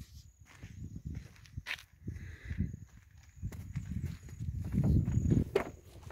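Footsteps on a dirt roadside, with irregular low rumbling on the phone's microphone and a few light clicks; the rumbling is loudest near the end.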